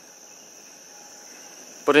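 Insects trilling steadily: one continuous high-pitched band with no breaks.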